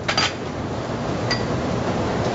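Steady restaurant-kitchen background noise with two light metallic clinks of pans or utensils, one right at the start and one just past halfway.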